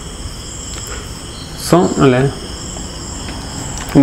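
A steady high-pitched background trill made of several tones, with a man's brief vocal sound about two seconds in.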